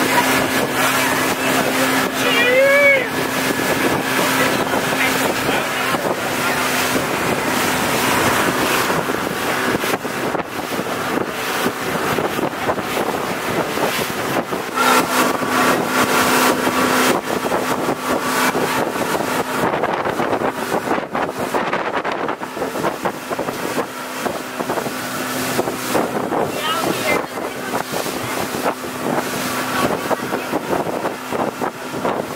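Outboard-powered motorboat running at speed: a steady engine drone under the rush of wind and water, with wind buffeting the microphone.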